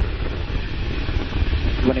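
Atlas V 541 rocket's RD-180 main engine and four solid rocket boosters firing during ascent: a steady, deep rumble.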